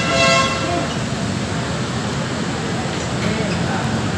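A horn sounds once, a short steady toot of about half a second right at the start, over the constant murmur of a packed crowd of commuters and a low traffic hum.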